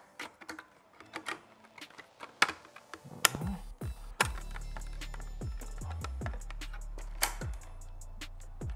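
Sharp hard-plastic clicks and taps as a turn-signal light is worked into the back of a carbon fiber mirror cover. About three seconds in, background music with a deep, steady bass beat comes in and carries on under further clicks.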